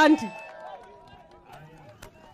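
A woman's voice over a public-address microphone ends a phrase, its tones trailing off, then low overlapping voices of a crowd.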